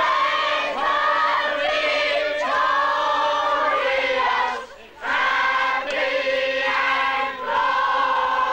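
A crowd of men, women and children singing together in long held notes, led by a man singing into a microphone, with a short break a little past halfway.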